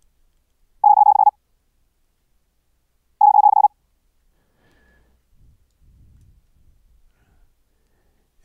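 Very fast Morse code (CW) practice tone, a whole word keyed at about 130 words per minute and regenerated by the sineCW plugin with shaped rise and fall. It comes as two short bursts of a pure tone near 800 Hz, each about half a second long, about two and a half seconds apart.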